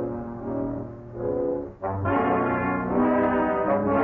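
Orchestral film score led by brass. It begins with soft held notes, and about two seconds in a louder, fuller brass chord comes in and holds.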